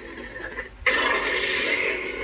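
Proffieboard lightsaber's small built-in speaker playing its sound font: a steady hum, then just under a second in a sudden loud rushing burst as the saber changes to the next sound font while still lit.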